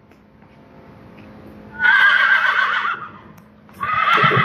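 A horse whinnying: one high, wavering call about a second long, starting about two seconds in, then a second call starting near the end.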